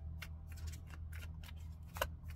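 A deck of tarot cards being shuffled by hand: a quick run of short card snaps and taps, about five a second, with a louder snap near the end, over a steady low hum.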